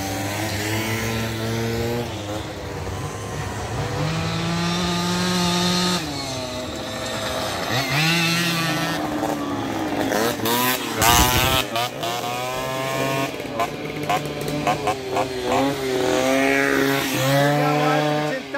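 Small single-speed moped engines, modified for the rally, revving as riders pass one after another. Their pitch rises and falls several times, with a short rasping burst about eleven seconds in.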